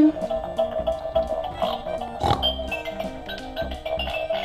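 Peppa Pig Magical Parade toy train playing a bright electronic tune, with a short pig snort about two seconds in.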